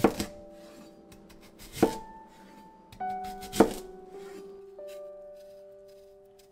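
Kitchen knife chopping through a daikon radish onto a cutting board: three sharp chops about 1.8 s apart, over soft piano music.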